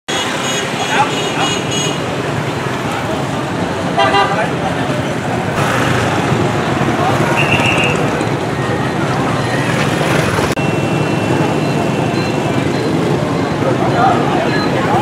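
Busy street at night: a steady wash of passing motorbike and car traffic, with short horn toots near the start and about four seconds in, and crowd chatter in the background.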